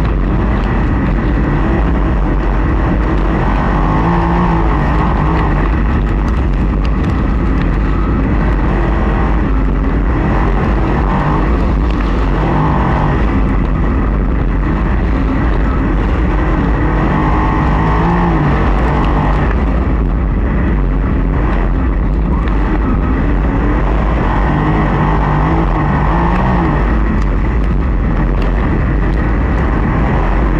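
Open-wheel dirt-track race car engine heard onboard at racing speed, its pitch rising and falling every few seconds as the throttle opens and lifts around the track. A constant low rumble of wind and exhaust lies underneath.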